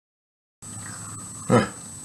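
Steady low room hum with a thin high whine, cutting in abruptly when the recording begins, then about one and a half seconds in a single short, loud vocal sound.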